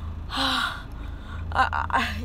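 A young man's excited gasp, one short breathy burst with a little voice in it, over the steady low rumble of a car's cabin.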